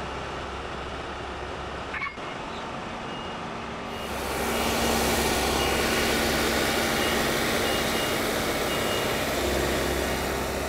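John Deere compact tractor's engine running, growing louder about four seconds in as it works the loader and backs away, with a short high beep repeating on and off.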